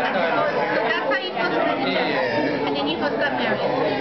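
Several people talking at once in a room: overlapping conversation and party chatter, with no one voice standing out.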